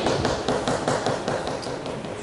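Rapid light tapping, a quick run of sharp taps or clicks at about six or seven a second.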